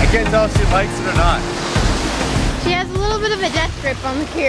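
Small waves breaking and washing up a sandy beach in a steady surf. A voice sounds over it twice, briefly.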